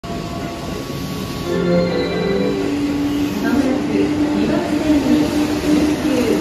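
Keihan 8000 series electric train pulling out of the station, its motors and wheels running steadily, with a platform announcement over it.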